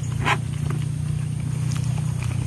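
A steady low hum runs throughout, with a short clatter about a quarter second in and a few faint ticks as a wire-mesh trap is handled.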